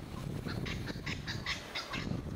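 A bird calling a quick run of about eight short notes, starting about half a second in and lasting about a second and a half, over low wind rumble on the microphone.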